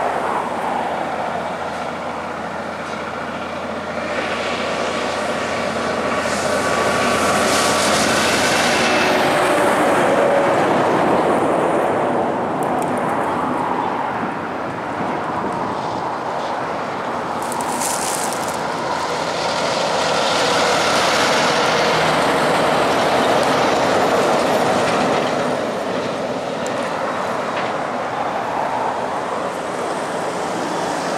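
Oversize heavy-haulage trucks carrying mining dump trucks on multi-axle trailers passing close by on a highway: diesel truck engines with heavy tyre and trailer rumble. The sound swells twice as the loads go past, once about a quarter of the way in and again past the middle.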